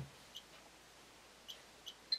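Geiger counter ticks: three short, high-pitched clicks, spaced irregularly, each a detected count, over near silence.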